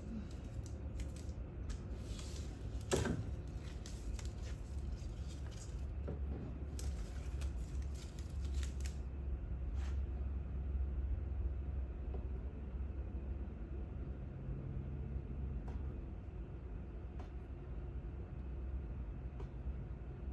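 Oracal 813 vinyl stencil mask being peeled off a carved, painted wooden sign. The first nine seconds or so hold a run of small crackles and ticks with one sharper click, then it goes quieter with only a few faint ticks over a low steady hum.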